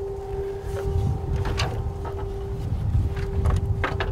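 Titanium wind harp's strings sounding a steady, held drone in the wind, over heavy wind rumble on the microphone, with a few sharp clicks.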